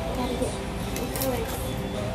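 Indistinct, untranscribed speech, wavering at a fairly high pitch like a young child's voice, over a steady low hum of shop ambience.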